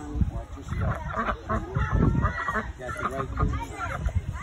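Several people chattering, with no clear words. A brief, higher held call sounds about halfway through.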